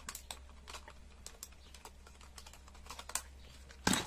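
Light, irregular clicks and taps of plastic felt-tip marker pens and their caps being handled, with one slightly louder click about three seconds in.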